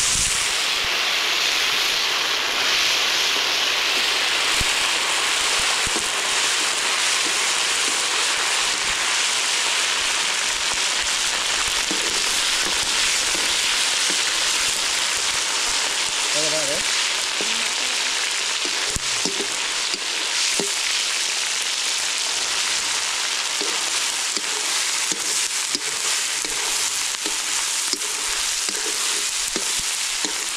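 Loud, steady sizzling of chopped tomatoes frying in hot oil in an iron wok over a wood fire, stirred with a metal ladle.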